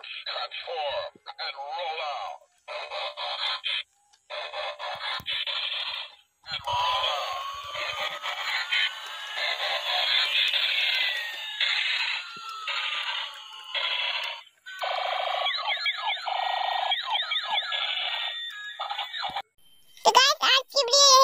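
Electronic voice, jingle and effect sounds from battery-operated toys, thin and tinny through tiny speakers, in short chopped phrases. First comes the white robot-transforming toy car, then, from about a third of the way in, the light-up A380 Airbus toy plane, with rising and falling swoops crossing each other near the middle.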